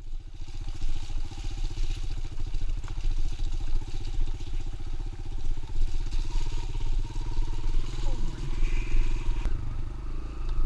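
Kawasaki KLX 140L dirt bike's single-cylinder four-stroke engine running steadily at trail-riding throttle, heard from on the bike.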